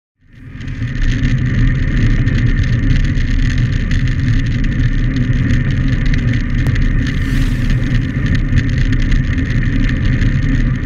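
Wind rushing over a handlebar-mounted camera's microphone and tyres running on a wet road as a bicycle rides fast downhill: a loud, steady rush that fades in over the first second.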